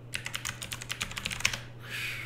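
Typing quickly on a computer keyboard: a rapid run of key clicks lasting about a second and a half, entering a short search query.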